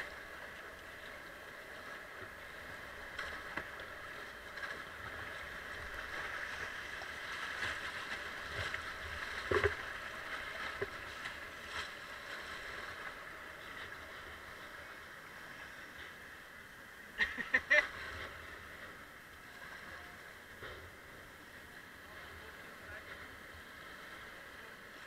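Fast-flowing river water rushing through a weir rapid, heard from a kayak, with paddle strokes splashing. A sharp splash comes about ten seconds in, and a few louder splashes come a little past the middle.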